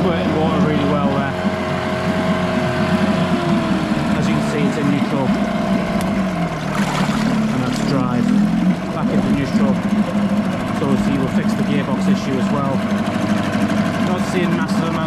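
Johnson 4 hp Seahorse two-stroke outboard running in a water test tank, its propeller churning the water, freshly fitted with a new water pump impeller and running nicely. The engine note drops about three seconds in and then wavers unevenly.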